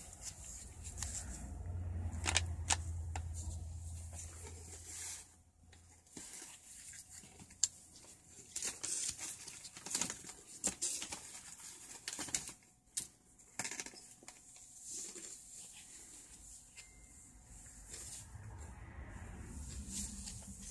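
Quiet handling noise: cardboard coin holders rustling and clicking as they are turned over in gloved hands, with a low rumble in the first few seconds.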